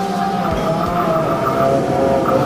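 Buddhist monks chanting into a microphone, a steady, sustained chant of held tones. Two soft low bumps come about half a second and a second in.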